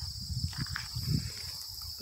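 Steady high-pitched buzzing of an insect chorus in summer fields, with an irregular low rumble underneath.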